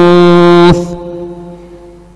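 A man's voice holding one long, steady note of Qur'an recitation, which stops about three-quarters of a second in and fades away in an echo.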